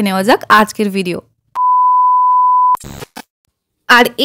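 An electronic beep sound effect: one steady, pure tone lasting a little over a second, cut off sharply, then followed by a brief burst of noise.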